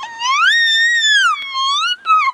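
Toddler girl's very high-pitched screech that rises, holds, dips and climbs again.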